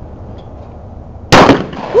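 A single shotgun shot, a sharp loud crack a little past halfway through that dies away quickly.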